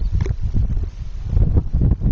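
Wind buffeting the camera microphone: a gusty low rumble that dips briefly about a second in.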